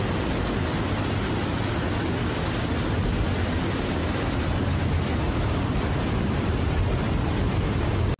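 Floodwater and mud rushing down a swollen channel, a loud, steady noise without a break.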